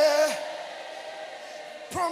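Live worship singing: a held, wavering sung note fades out just after the start, a softer stretch with faint lingering tones follows, and a new sung phrase begins near the end.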